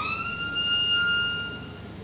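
Solo violin ending an upward glissando on a high bowed note. The note is held steadily and fades out shortly before the end.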